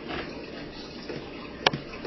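Low room noise with no motor running, and one sharp plastic click near the end as the old push-button blender's jar and lid are handled.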